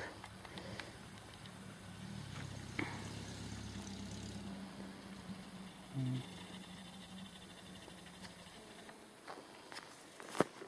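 Faint engine of a truck driving away: a low steady hum, a little louder around three to four seconds in and dying away toward the end.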